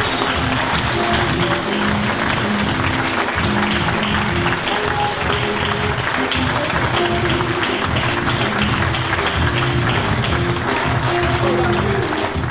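Audience applauding steadily over recorded music.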